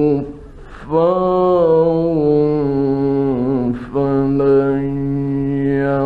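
Male Quran reciter chanting in the melodic mujawwad style, drawing out two long held notes. The first begins about a second in and wavers before stepping down in pitch; the second, lower note follows after a brief break. The old recording sounds dull and narrow.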